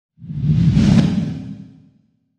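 A logo-reveal whoosh sound effect that swells in quickly with a deep low rumble under it, then fades away over about a second.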